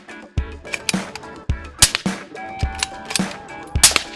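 Background music with a steady beat, over which two sharp cracks of a suppressed rifle firing ring out about two seconds apart, the second near the end. The rifle is fitted with a CGS Hyperion 3D-printed suppressor.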